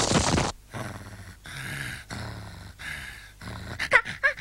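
A loud hissing noise cuts off about half a second in. It is followed by three slow, rhythmic, growly snores from a sleeping animated character, each about a second long.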